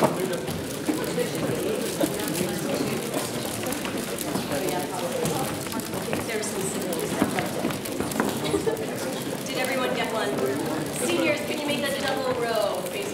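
Many voices talking at once: crowd chatter as people mingle and congratulate one another.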